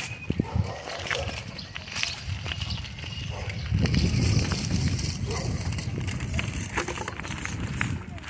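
Footsteps crunching on a gravel dirt road, an uneven run of short scuffs and crunches, over a low rumble that grows louder from about four seconds in.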